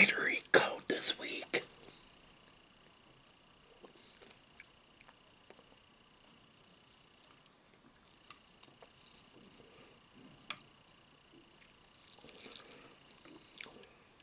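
Close-miked eating: a short whisper at the start, then quiet chewing with scattered wet mouth clicks as fried chicken is pulled apart and eaten. A louder patch of crisp tearing and chewing comes near the end.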